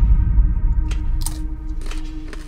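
A deep bass boom from an edited-in sound effect, fading slowly under a steady held low note, with a few sharp clicks in the second half.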